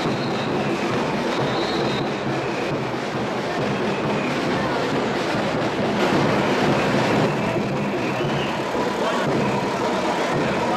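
Steady, dense din of a street carnival parade, with crowd noise and a running vehicle engine mixed together.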